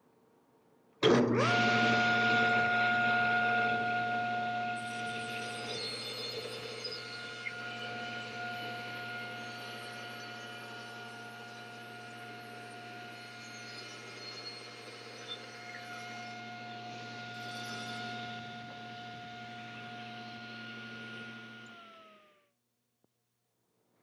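Table saw starting up about a second in and running with a steady whine while its blade cross-cuts a thin strip off the edge of a wooden frame-and-panel guided by the rip fence. Near the end its pitch begins to drop as the motor winds down, and the sound cuts off abruptly.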